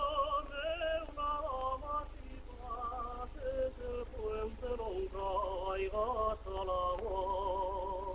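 A solo voice sings a slow, ornamented Asturian song, holding long notes with a strong, wavering vibrato. It comes from an old film soundtrack, with a steady low hum underneath.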